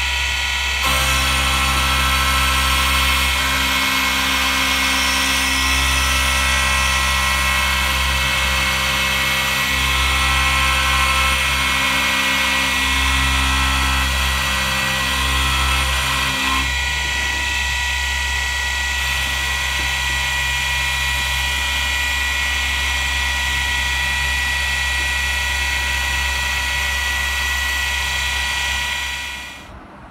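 Syil X5 CNC milling machine's spindle running with an end mill cutting metal: a steady whine made of several fixed tones over a hiss. The cutting sound changes about a second in and again about halfway through, and stops just before the end.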